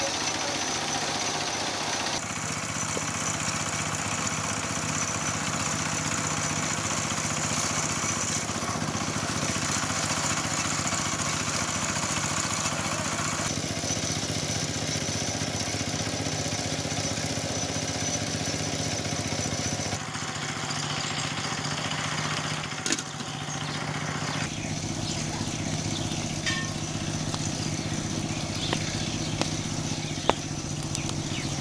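Small engine running steadily, driving a rice thresher as rice stalks are fed into it, with the whir of the threshing drum over the engine. A sharp knock sounds about three-quarters of the way through.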